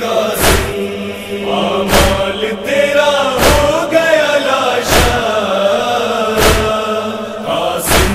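Nauha backing: a wordless chorus of voices chanting in long, gliding lines over a steady low drone, kept in time by a heavy thump about every second and a half.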